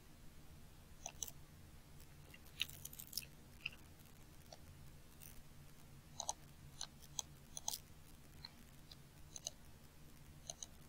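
Scattered light clicks of a computer mouse, irregular and a few at a time, over a faint steady hum.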